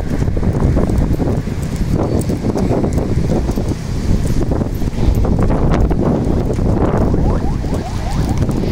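Wind buffeting the microphone: a loud, rough, fluttering rumble.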